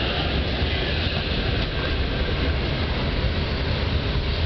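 Regional passenger train running along the line, heard from inside the carriage: a steady rumble and rush of wheels on the rails.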